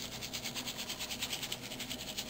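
Chocolate sprinkles rattling in a small plastic container as it is shaken over a cake pan: a quiet, rapid, even rattle.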